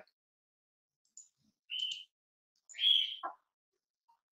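A bird chirping: two short, high calls about a second apart, the second one louder.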